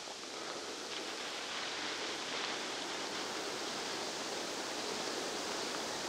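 Steady hiss of wind through dry grass and bare brush, even throughout, with no distinct events.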